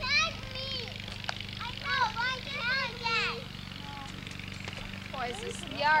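Young children's high-pitched voices calling and babbling without clear words, in bursts through the first half and again near the end, over a steady low hum.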